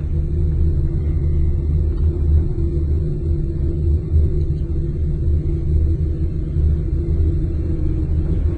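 Steady low rumble of a gondola cabin riding along its haul cable, heard from inside the cabin.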